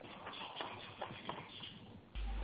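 Faint rustling noise over the hiss of a telephone conference line, with the sound cut off above the phone line's narrow band.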